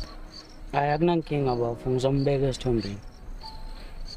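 A cricket chirping in short high chirps that repeat steadily behind a person talking. The talking, in the first three seconds, is the loudest sound.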